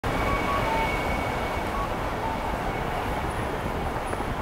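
Steady city street ambience: an even hum of traffic and crowd noise without distinct voices, with a few faint, brief tones in the first half.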